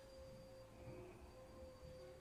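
Near silence: room tone with a faint, steady, even tone held at one pitch.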